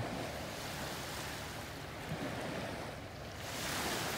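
Small sea waves washing in, a steady wash that swells near the end as a wave comes in.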